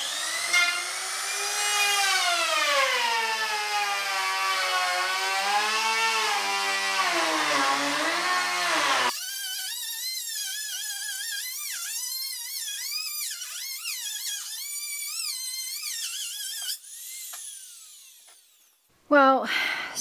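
Compact trim router cutting a rebate along the edge of a plywood floor panel, its motor whine wavering in pitch as it is pushed along the cut. About nine seconds in the sound turns thinner and higher, and near the end the motor is switched off and winds down with a falling whine.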